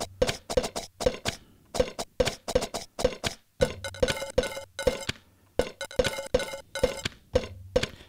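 Percussive sample loops played live from a Roland SP-404MKII sampler, switched by hand between pads in a mute group so only one loop sounds at a time, with loose timing. Quick clicky hits with a ringing tone, about three or four a second, with a low hum and bright metallic ringing coming and going as the loops change.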